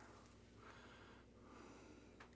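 Near silence: room tone, with two faint soft breaths.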